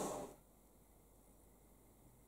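Near silence: quiet room tone, after a brief soft sound at the very start that ends about a third of a second in.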